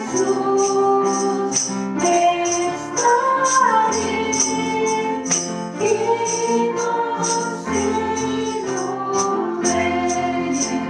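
Christian song sung by voices over instrumental accompaniment, with a tambourine shaken on a steady beat.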